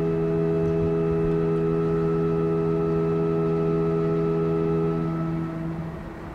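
Organ holding a soft sustained chord, its upper notes dropping out one by one until the chord is released near the end, leaving the church's reverberation and a faint hiss.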